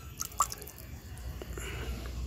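A capful of liquid organic fertilizer poured into a bucket of water, with a few small drips near the start and a faint trickle after.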